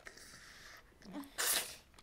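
A man sobbing: a brief voiced catch about a second in, then one sharp, breathy burst of breath as he breaks down crying.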